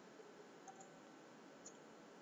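Near silence: room tone, with two faint computer-mouse clicks, one about two-thirds of a second in and one near the end.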